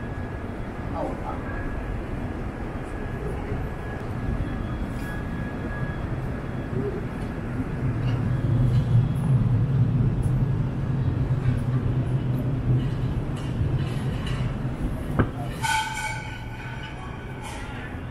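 A light rail tram running along a city street, its low rumble building up over several seconds. Near the end a brief high ringing tone of several pitches sounds at once, with pedestrian chatter around.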